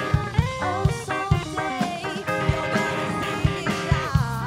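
Live rock band playing an instrumental passage: electric guitar notes over bass and a drum-kit beat.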